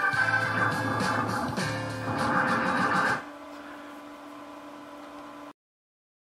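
Music playing through a full-range PA speaker that is high-pass filtered by the crossover, so the deepest bass is cut. About three seconds in it drops to a quieter held chord, then cuts off suddenly shortly before the end.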